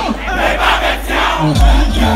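Concert crowd shouting along loudly as the beat thins out, with a deep bass hit from the music sliding down in pitch near the end.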